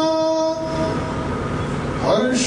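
A man's singing voice holds one steady note into a microphone and fades out about half a second in. A steady rumbling noise with no clear pitch follows.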